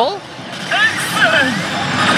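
HEY! Elite Salaryman Kagami smart pachislot machine's game audio, with a few short gliding tones, over the steady noise of a pachislot hall.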